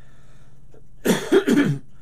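A man coughing: a loud, short fit of two or three coughs about a second in.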